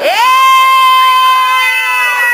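A person's long, high-pitched drawn-out vocal cry. It swoops up at the start, holds one note for about three seconds and sinks slowly at the end, in the manner of an excited shriek.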